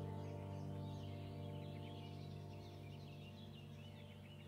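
Calm new-age background music: a held chord slowly fading, with bird calls chirping over it throughout.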